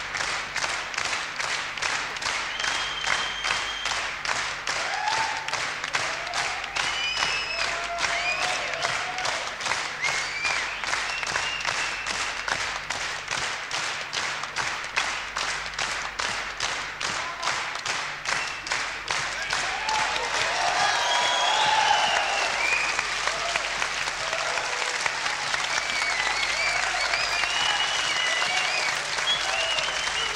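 Concert audience clapping in unison at a steady beat of about two claps a second, calling the band back for an encore after the show's end. Shouts and calls from the crowd rise over the clapping in the second half.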